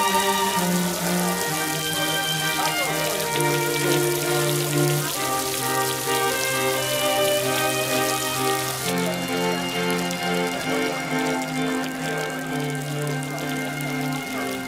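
Heavy rain falling on a paved plaza: a steady hiss of drops that softens about nine seconds in. Slow background music with long held notes plays over it.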